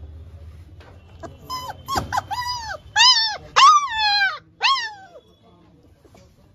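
Labrador puppy whining and yelping in a run of about seven high cries, each rising then falling in pitch, from about a second and a half in until about five seconds in. It is being held back from its food bowl and is crying to get at the food.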